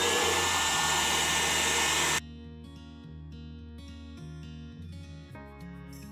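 Hand-held hair dryer blowing on a snow globe's hot-glued base cover to soften the glue: a loud rush of air with a motor whine that rises as it spins up, then holds steady. It cuts off suddenly about two seconds in, leaving soft background music.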